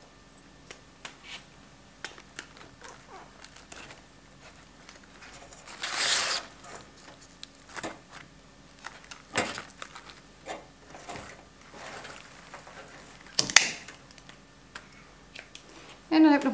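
Quiet handling noise of a dried floral arrangement: scattered small clicks and crackles of moss and dried bark as fruit picks are pushed into floral foam. A short louder rustle comes about six seconds in, and a sharp crackle near thirteen and a half seconds.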